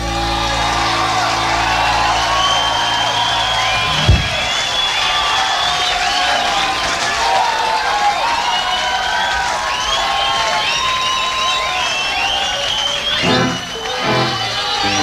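A rock band's live set: a held closing chord on guitars ends with a sharp final hit about four seconds in. The audience then cheers and whistles.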